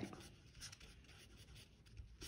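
Felt-tip marker writing on paper: faint, soft scratching strokes as letters are written.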